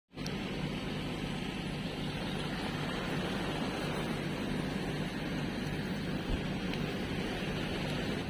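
A vessel's engine droning steadily under an even hiss of wind and sea.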